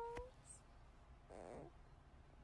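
Faint sounds from a newborn baby: a soft held coo that trails off in the first moment, then one short small whimper about a second and a half in. A single click comes just after the coo.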